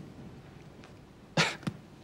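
A man's halting speech: a quiet pause, then a short breathy burst about one and a half seconds in as he says the word "you".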